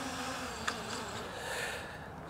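MJX Bugs MG-1 quadcopter's brushless motors and propellers buzzing faintly as it descends to land on return to home, with a faint click about two-thirds of a second in.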